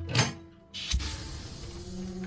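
A metal keypad safe being opened: a short swish as its lever handle turns, then a low clunk about a second in as the heavy door comes free and swings open, with a steady hiss. Low film-score tones return near the end.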